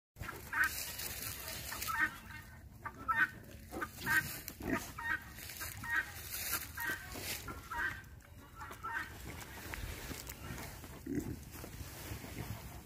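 Kunekune pigs grunting and squeaking in short repeated calls, about one or two a second, with a few deeper grunts among them.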